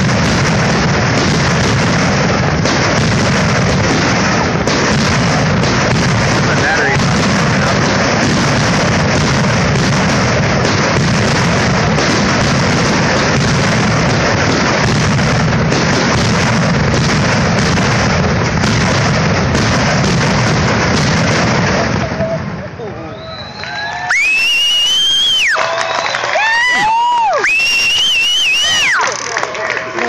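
Fireworks finale: a dense, unbroken barrage of shell bursts and crackle for about twenty seconds that stops suddenly. A couple of seconds later spectators cheer with high, long whoops that rise and fall.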